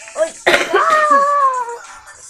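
A person's vocal outburst: a short sound, then a sudden cough-like burst about half a second in that turns into a high, held cry sliding slowly down in pitch for about a second.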